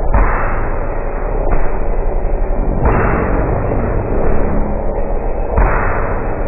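A band's song recording slowed to 1% speed, stretched into a loud, dense, grainy wash of sound with no beat or recognisable tune. Its texture jumps abruptly about a second and a half in, near three seconds, and twice more near the end.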